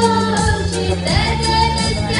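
A woman singing into a microphone over musical accompaniment, holding long sustained notes above a steady low bass line.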